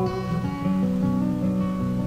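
Acoustic guitar playing alone in a soft folk song recording, with held notes changing in the gap between sung lines.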